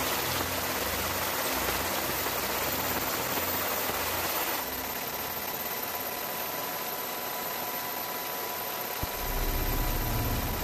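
Steady engine drone under a rushing wind noise, as heard from an aircraft filming from the air. The sound shifts abruptly about halfway through, and near the end a stronger low rumble comes in.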